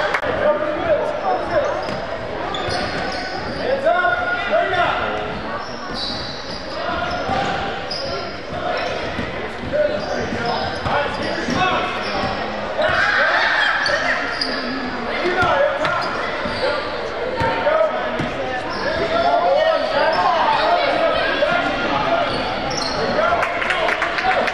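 Basketball bouncing on a hardwood gym floor, with the voices of players and spectators echoing through a large hall.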